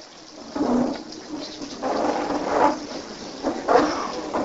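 Paper pages rustling as a Bible is turned to Romans 12, a patter of noise lasting a few seconds, with a short low voice sound just under a second in.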